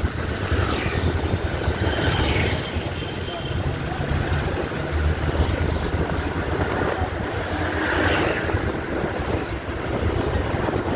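Steady low engine and road rumble of a moving bus, heard from on board.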